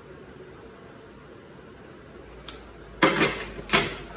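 Quiet room tone, then near the end two loud clacks, a little under a second apart, of kitchen tongs knocking against a plate as the steak is set down.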